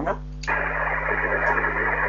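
Kenwood TS-570 CB transceiver on single sideband switching back to receive: about half a second in, a steady band of static hiss opens up through the speaker, the open channel just before the other station speaks, over a steady low hum.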